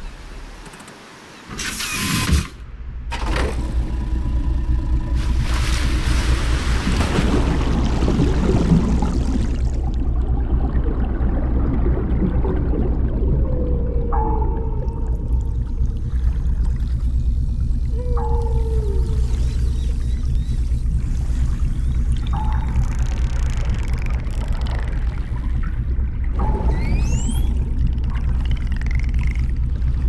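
Sound-design underwater ambience for a car that turns into a submarine. A sudden splash comes about two seconds in, followed by a few seconds of rushing water. Then a steady low rumble carries on, with short pings about every four seconds and a few gliding, whale-like calls.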